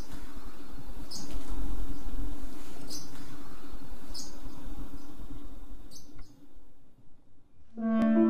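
Short, high bird chirps every second or two over a steady low hum and rumble. The hum fades out near the end, and held piano notes come in.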